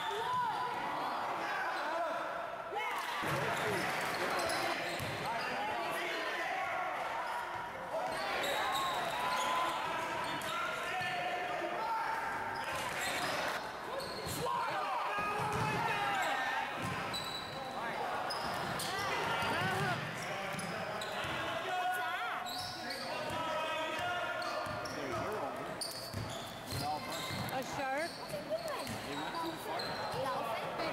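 Basketball being dribbled and bounced on a hardwood gym floor during a game, with repeated sharp bounces. Players and spectators are shouting and talking over it, but no words are clear.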